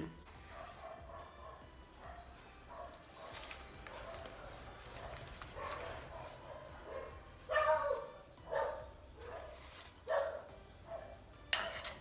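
A dog barking a few times in the background, starting about halfway through, over faint low household sound.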